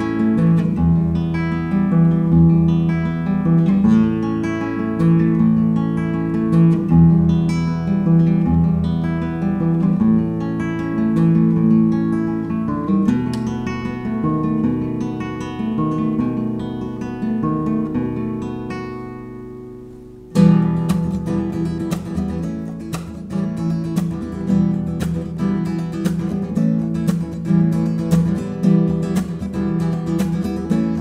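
Acoustic guitar played solo: chords picked and strummed in a steady rhythm, dying away about two-thirds through, then a sudden loud strum and livelier strumming.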